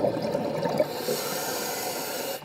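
A scuba diver breathing through the regulator underwater. Exhaled bubbles gurgle for about the first second, then the regulator's demand valve hisses steadily as the diver inhales.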